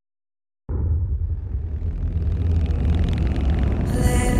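A deep rumble of a fast-moving car cuts in suddenly out of silence less than a second in, then swells, growing louder and brighter.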